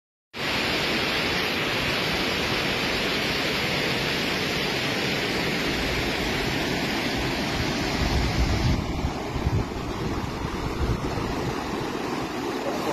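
Muddy floodwater of the swollen Kali Gandaki rushing through the village: a loud, steady rush that starts abruptly. About nine seconds in it turns duller, with low rumbling surges.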